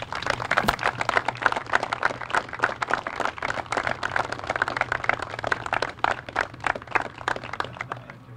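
Outdoor crowd applauding, a dense patter of claps that starts suddenly and stops near the end.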